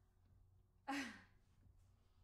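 A young woman's single short, breathy vocal huff with a falling pitch, about a second in.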